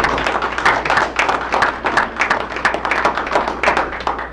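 Audience applauding, with many individual hand claps, dying away at the end.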